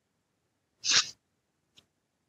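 A woman's single short sneeze, about a second in. She puts it down to a head cold coming on.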